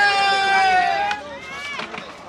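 A loud, long-drawn shout from one voice, held on one wavering pitch and trailing off about a second in, followed by quieter crowd murmur.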